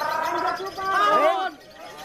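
Fischer's lovebird giving its long chattering ngekek song, a fast run of high, bending calls that breaks off about one and a half seconds in.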